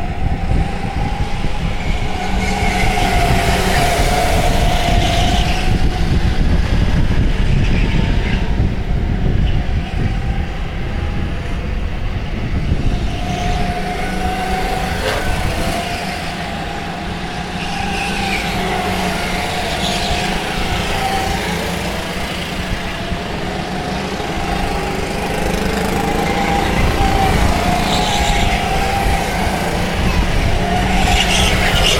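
Several racing go-karts' engines running around the track, their pitch rising and falling as they accelerate, lift off for corners and pass by.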